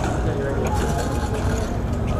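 Small hard wheels of a kick scooter rolling over paving, a steady low rumble, with faint voices in the background.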